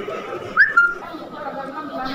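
A short whistle just past half a second in: a quick upward swoop in pitch followed by a brief steady note.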